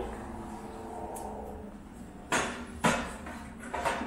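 Kitchen handling clatter at a granite counter: two sharp knocks about half a second apart just past the middle, and a smaller knock near the end, over a faint steady hum.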